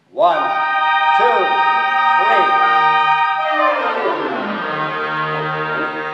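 Concert band playing a loud held chord, with short woodwind figures over it, then a quick descending run of thirty-second notes about three and a half seconds in, landing on a sustained final chord.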